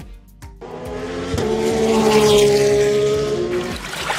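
A motor vehicle's engine sound swells to a peak about two seconds in and fades away, its pitch dipping slightly near the end, like a car passing by.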